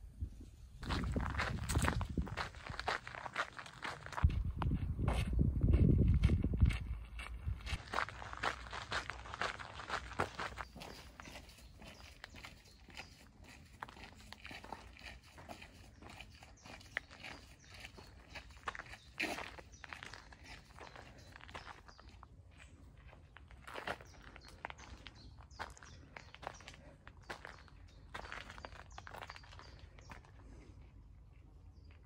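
Footsteps of someone walking along a path, a run of irregular soft crunching steps. For roughly the first seven seconds a loud low rumble, the loudest thing here, covers them.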